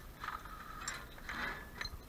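A glass object with a metal frame being handled among trash: a few short bursts of rattling and rustling, with a click or two near the end.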